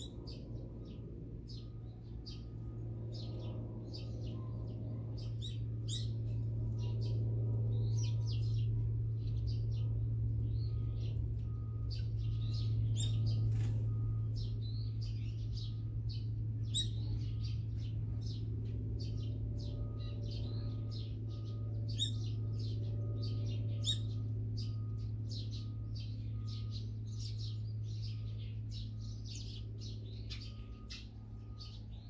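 Small songbirds chirping rapidly and continuously, many short overlapping calls, with a steady low hum underneath.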